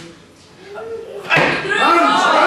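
A weightlifter's feet stamp onto the platform as he drives the barbell overhead into a split jerk, a single sharp impact a little past halfway, with voices shouting around it.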